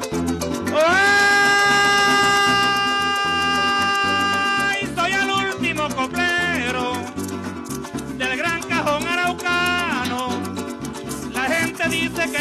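Llanero joropo sung by a man over harp, cuatro and maracas keeping a quick steady rhythm. About a second in he slides up into one long high note and holds it for about four seconds, then sings short ornamented phrases.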